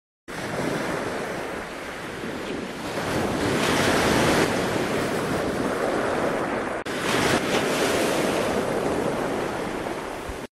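Wind and sea surf rushing over the microphone, a steady wash of noise that swells about four seconds in, with a brief break about seven seconds in.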